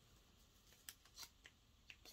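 Near silence, with a few faint light clicks of small parts being handled about a second in and near the end.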